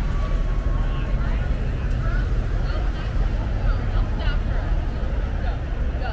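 Busy city street: a steady low rumble of car traffic passing close by, with scattered voices of people talking on the sidewalk.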